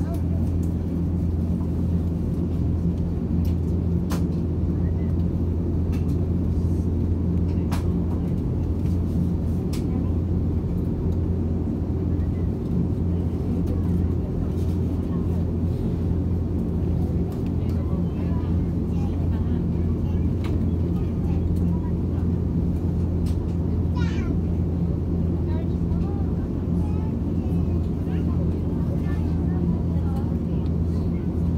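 Steady low drone inside the cabin of an Airbus A330neo on the ground, an even hum from the aircraft's engines and air systems, with a few faint clicks and faint cabin voices underneath.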